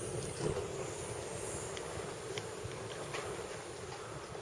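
Steady wind noise buffeting the microphone, with a few faint clicks.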